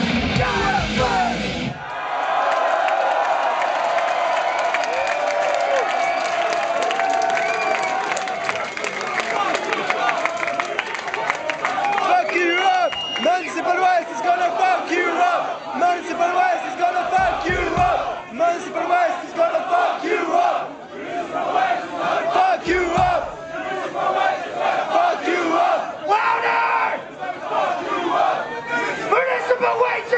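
Thrash metal band's song ending about two seconds in, then a club crowd cheering and yelling, many voices at once, with a few short low thumps from the stage later on.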